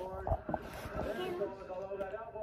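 Sound of a hockey-hits compilation playing from a television in the room, with steady held tones and some voice-like sound, and a few low bumps from the phone being handled.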